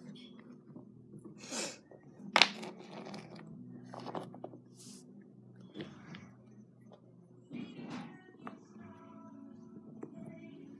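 Painted wooden toy blocks knocking and clicking as they are handled and set down, with one sharp click about two and a half seconds in and softer knocks and shuffles scattered through the rest.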